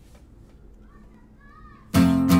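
Faint distant children's voices over low room noise, then near the end an acoustic guitar's first strummed chord comes in suddenly and loud.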